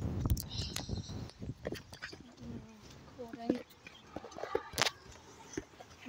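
Irregular knocks and rustles of a hand-held camera being carried while walking, with a faint distant voice about two to three seconds in.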